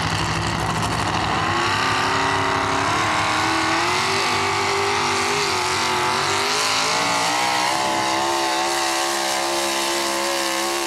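Four-wheel-drive sportsman-class pulling truck's engine revving hard under load as it drags a weight-transfer sled. The pitch climbs about a second and a half in and then wavers up and down at high revs.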